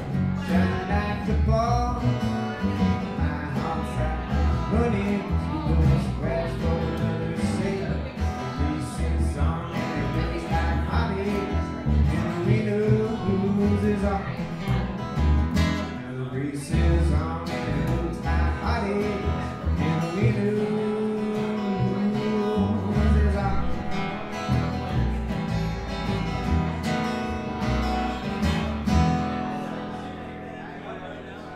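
Live band playing a song with guitar and singing, dying away near the end.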